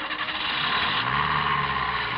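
Open Land Rover's engine running as the vehicle pulls away, with a steady low drone that settles in about half a second in.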